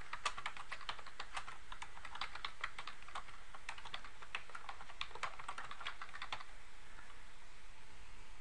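Typing on a computer keyboard: a quick, uneven run of key clicks that stops about a second and a half before the end.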